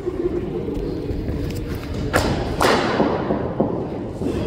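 Cricket ball and bat in an indoor net: two sharp knocks about half a second apart, a little past the middle, the second the louder with a short echo after it, most likely the ball pitching on the matting and then being struck by the bat.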